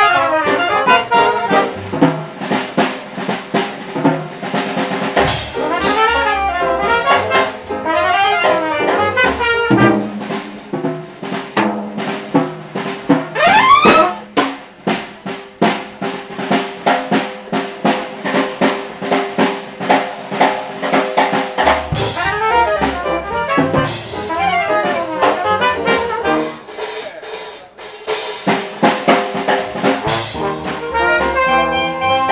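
A small traditional jazz band playing live: cornet, clarinet and trombone lines weaving together over piano, upright bass and a drum kit. About halfway through, one horn sweeps sharply upward.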